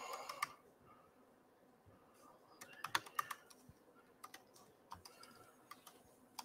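Faint typing on a laptop keyboard: irregular runs of key clicks, with a pause in the first couple of seconds and a quick cluster about three seconds in. A brief, slightly louder sound comes right at the start.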